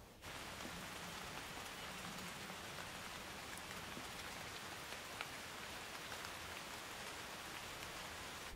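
Steady rain falling, beginning suddenly just after the start, with faint scattered drop ticks and one sharper tick about five seconds in.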